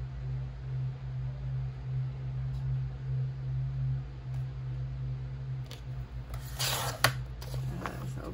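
A sliding paper trimmer cutting through a sheet of paper near the end: a short scraping cut that ends in one sharp click. A steady low hum sits underneath throughout.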